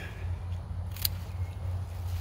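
A single sharp click about a second in as a leafy tomato stem is taken off the plant by hand, among faint rustling of the foliage.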